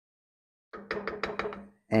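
A quick run of light knocks, about nine in a second, from a wooden spoon stirring soup in an enamelled cast-iron pot, starting a little under a second in.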